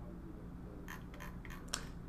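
A steady low hum with a few faint, short clicks, a cluster about a second in and a sharper one near the end.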